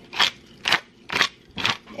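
Hand pepper grinder being twisted to grind pepper: four short crunchy grinding bursts, about two a second.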